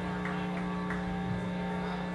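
Steady electrical buzz from stage guitar and bass amplifiers left on while the band is not playing: a low hum with several evenly spaced overtones, holding at one level.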